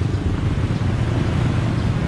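Steady low rumble of road traffic passing along a busy city street, with no single vehicle standing out.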